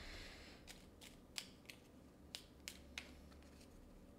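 Tarot cards handled in the hands, giving a short soft rustle and then faint, irregular sharp clicks as the cards snap against each other.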